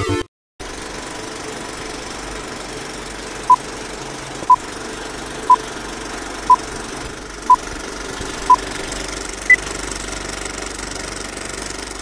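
Old-film countdown leader sound effect: a steady film-projector clatter with a short beep each second, six beeps at one pitch and then a seventh, higher beep.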